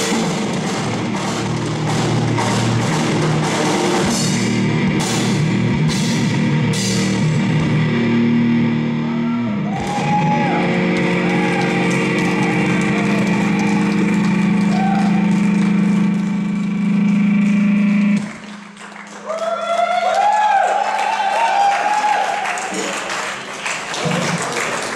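Live rock band with drum kit and electric guitars playing the final stretch of a song, then held droning guitar and bass notes from about ten seconds in that cut off abruptly about eighteen seconds in. After the cut-off, voices shout and whoop over a faint lingering tone.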